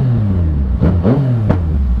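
Yamaha MT motorcycle engine running under way, its pitch rising and falling as the throttle is worked.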